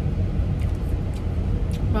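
Steady low rumble of a car's interior, the engine and road noise heard from inside the cabin.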